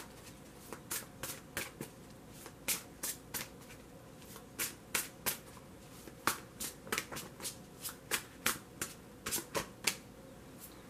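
Tarot deck being shuffled by hand: quiet, irregular card clicks and flicks, several a second and often in small clusters.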